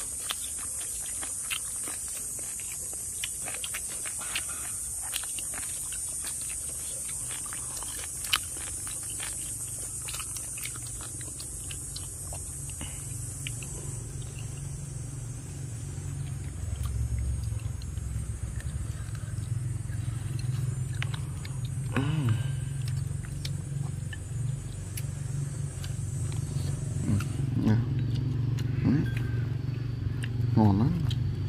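Small clicks of chopsticks against bowls during a meal, over a steady high-pitched drone that stops near the end. From about halfway a low rumble builds and becomes the loudest sound.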